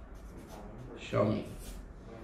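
Felt-tip pen writing on a sheet of paper in short strokes, adding a word to a list. About a second in, a brief voiced sound from a man is the loudest thing.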